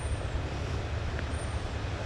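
Steady rush of creek water flowing over a shallow riffle, with a low rumble underneath.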